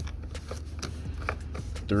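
Faint handling noise from an amplifier power wire being pressed into a plastic wiring-harness clip along the door sill: a few light plastic ticks and rustles over a steady low hum.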